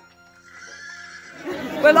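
Quiet plucked music notes fading out, then a horse whinny rising up about half a second in; a woman's voice cuts in near the end.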